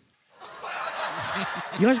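Studio audience laughing at a comedian's punchline, the laughter swelling in about half a second after a brief pause. The comedian's voice comes back in near the end.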